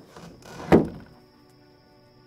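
A door is pushed shut with a single loud thud about three quarters of a second in. Soft sustained music chords come in right after it.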